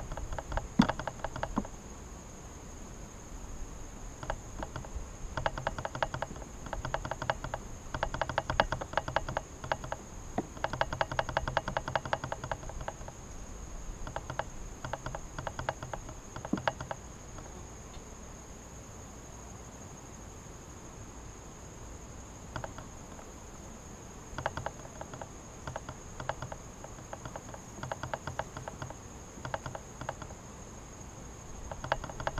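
Honeybees buzzing close around an open hive in irregular bursts, with a rapid rattling flutter. A steady high-pitched insect trill runs behind them.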